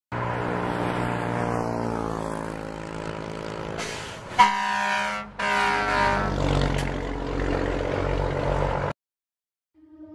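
Heavy Scania truck driving past, its diesel engine note sliding down in pitch as it goes by. About four and a half seconds in comes one short loud truck horn blast, then the engine runs on.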